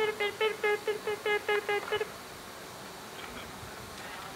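A human voice rapidly repeating one short syllable, about five times a second for the first two seconds, then stopping. It is an onomatopoeic imitation of a bird or insect call, played from a portable speaker.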